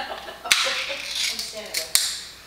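Foil lid being peeled off a small Fancy Feast cat food cup: a sharp pop as the seal breaks about half a second in, then crinkly tearing of the foil, with two more sharp snaps near the end as it comes free.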